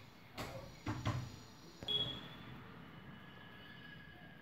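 A few faint, soft knocks and bumps in the first two seconds, the last with a brief high tone, then faint steady room noise.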